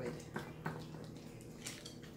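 Wire whisk working soaked bread cubes in an egg-and-milk mixture in a glass bowl: soft wet squishing with a couple of light clicks against the bowl in the first second, over a faint steady hum.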